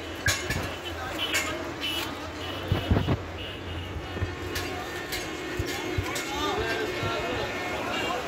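Voices talking over a steady hum of road traffic, with a few sharp knocks.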